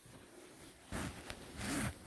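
Net curtain fabric being pushed aside and brushing against the phone, with a couple of light clicks about a second in and a louder rough swish near the end.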